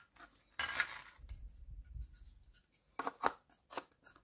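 Hard plastic toy parts being handled and fitted together. There is a scraping rustle about half a second in, then a few short, sharp plastic clicks near the end as pink plastic legs are pushed into the base of the toy kitchen.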